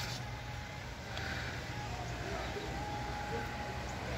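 Steady low outdoor background rumble with a faint thin tone in the later part. The putter's strike on the ball is not clearly heard.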